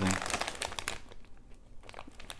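Plastic snack bag of popcorn crinkling as it is handled and raised to the face, a run of quick crackles that dies down after about a second and a half.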